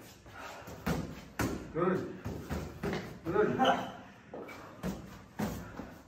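Boxing-glove punches landing with sharp thuds, several of them spread through the moment, with a man's voice in between.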